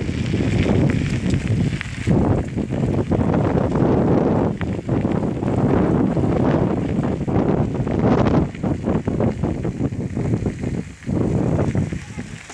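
Wind buffeting the microphone of a rider on a moving bicycle, with tyres crunching and rattling over a gravel trail in many short crackles.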